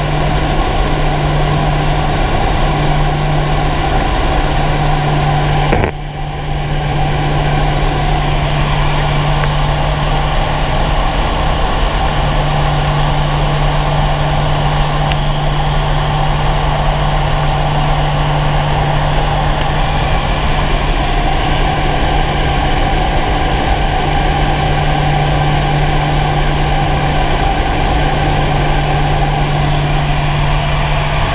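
Twin turboprop engines and propellers of a Short SC.7 Skyvan heard inside the cockpit in flight: a loud, steady drone with a constant low tone, briefly dipping about six seconds in.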